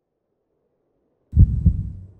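A heartbeat sound effect: two deep, loud thumps in quick succession, a lub-dub, about a second and a half in.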